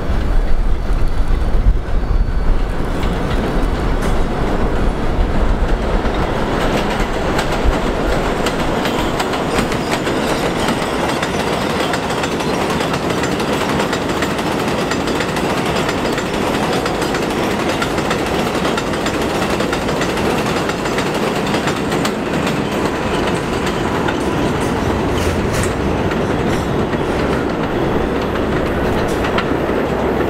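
New York City subway train running along an elevated line past the station platform, its wheels on the rails making a steady, loud rush, with a low rumble heaviest in the first few seconds.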